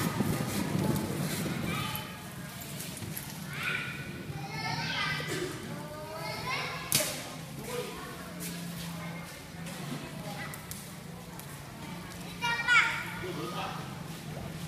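Children's voices calling and chattering, over a steady low hum. There is a sharp click about seven seconds in, and a loud high-pitched cry near the end.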